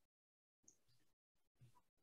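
Near silence: very faint room noise that cuts in and out.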